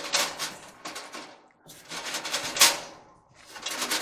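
Hands working inside an opened clothes dryer cabinet: irregular clicking, scraping and clattering of sheet metal, parts and wiring, with one sharp knock about two and a half seconds in.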